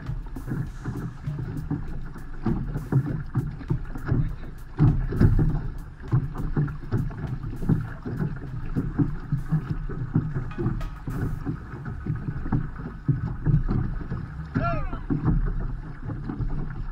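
Sea water rushing and splashing along the hull of an outrigger canoe under paddle, with wind on the microphone. The noise surges irregularly throughout, and there is a brief pitched call near the end.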